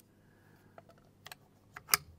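A few light clicks as a fresh .22 LR round is handled and loaded into the rifle, replacing one that failed to feed; the loudest click comes just before the end.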